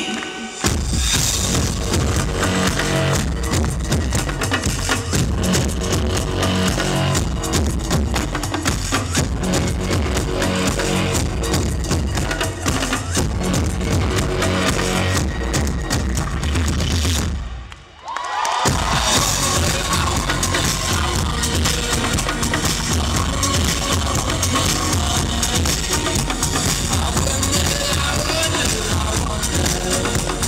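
Live electro-pop band playing an instrumental passage, with a steady kick-drum beat under synthesizers. The music drops out briefly just after the start and again for about a second about 18 seconds in, then comes back in with a synth line.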